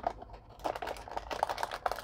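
Plastic blind bag crinkling as a hand squeezes it and pulls it out of a cardboard box compartment: a dense run of irregular crackles that thickens about half a second in.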